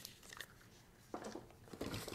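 Faint handling noises: a few soft knocks and rustles of tools being handled, mostly in the second half.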